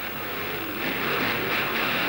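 Engines of a Dodge D100 pickup and a Chevy passenger car running at a drag-strip start line: a rough roar that grows louder about half a second in.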